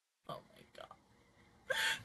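A person's voice making brief wordless sounds, cutting in abruptly after dead silence about a quarter second in, then a sharp, loud intake of breath near the end.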